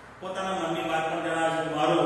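A man's voice reading Gujarati aloud in a slow, drawn-out, chant-like delivery, beginning a fraction of a second in after a short pause.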